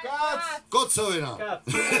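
A man talking, then near the end an acoustic guitar strummed while he laughs.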